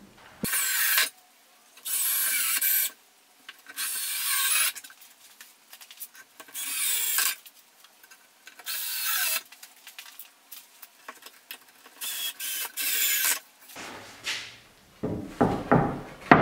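Ryobi cordless drill/driver driving short wood screws into pocket holes in MDF, in about six separate bursts of a second or so each. A few knocks near the end.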